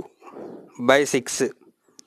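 A man's voice says a brief word or two about a second in, preceded by a soft, low rustle.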